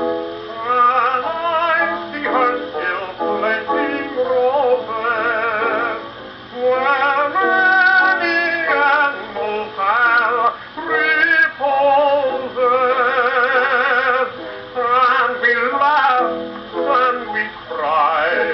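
A 1920s 78 rpm shellac record playing on a Columbia Viva-tonal acoustic phonograph: a passage of the song's dance-band accompaniment, with melody lines that carry a strong vibrato.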